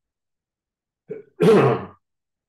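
A man clearing his throat: a short first sound about a second in, then a louder, longer one right after it.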